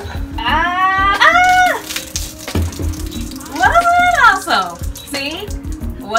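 Two high-pitched, drawn-out vocal cries, each rising and then holding, followed by a shorter falling cry near the end.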